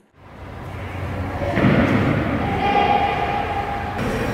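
Background rumble fading in from silence, growing stronger about a second and a half in, with a steady held tone over it through the second half.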